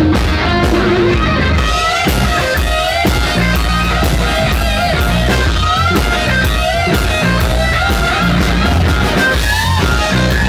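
Live rock band playing an instrumental passage: distorted electric guitars over bass and drums, with a lead guitar line of bent, sliding notes.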